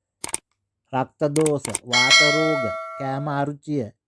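A short click, then about two seconds in a bright bell ding that rings for about a second: the notification-bell sound effect of a subscribe-button animation, heard under ongoing narration.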